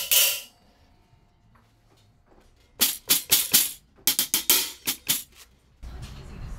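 A drumstick striking a cymbal stack fitted with clusters of jingles around its edge, with a jingling ring. One loud hit at the start rings briefly. About three seconds in come two quick runs of short strikes, about five and then about seven.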